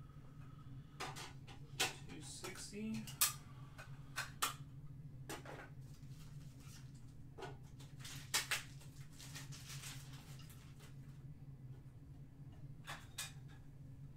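Trading cards and hard plastic card holders being handled on a table: scattered light clicks and taps with brief rustling, over a steady low hum.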